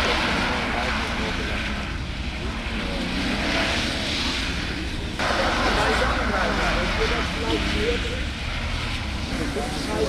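A car's engine revs as it slides sideways on a flooded skid pad, with a steady hiss of water spraying off the tyres. The sound changes abruptly about five seconds in.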